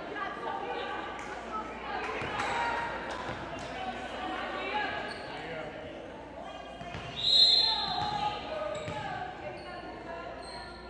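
Voices of players and spectators echoing in a gymnasium, with a volleyball bouncing on the hardwood floor a few times and a loud, short whistle blast about seven seconds in, the referee's signal to serve.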